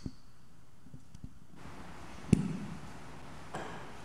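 Handling noise from a handheld microphone being put down on an organ console: a few small clicks, then one sharp thump with a short low ring a little over two seconds in, and a softer knock near the end.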